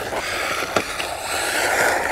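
MJX Hyper Go brushless RC car running across loose gravel: a steady motor whine over the hiss of its tyres on the stones, with a few clicks of flung grit.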